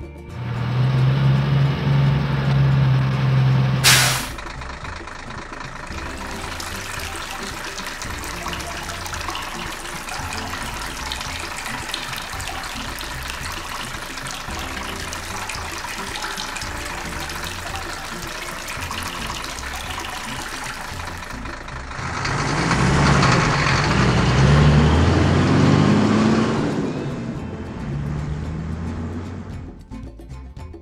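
Truck sound effects for a cartoon cement mixer. A loud low engine hum for the first four seconds ends in a sharp burst, then a steady engine sound follows, growing louder for several seconds near the end before it fades.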